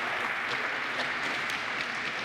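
Audience applauding, an even wash of clapping at a steady level.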